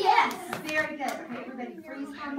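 Children's and a woman's voices calling out in short, unclear bursts in a small room, loudest just at the start.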